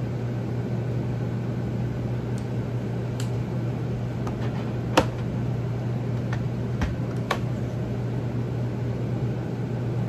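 Steady low mechanical room hum, with a few light clicks from handling a micropipette and its tips; the sharpest click comes about halfway through.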